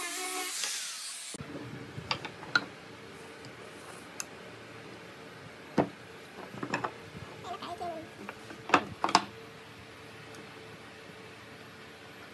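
A small handheld electric disc sander running on a pine board, stopping abruptly about a second and a half in. Then scattered knocks and taps of cut pine pieces being picked up and set down on a wooden table, over a faint steady hum, the loudest pair of knocks near the middle.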